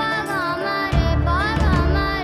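A young girl singing an ornamented melody, sliding and bending between notes, over a steady held drone and low drum hits, in a Pakistani band performance.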